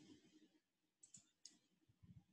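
Near silence with three faint, short clicks from about a second in.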